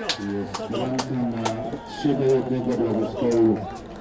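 Men's voices talking and calling out, with a few sharp clicks in the first second and a half.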